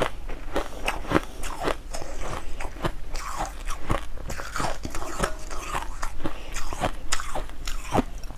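Crunching bites into a block of packed crushed ice soaked in purple liquid, with chewing between them. The crunches are many, crisp and irregular.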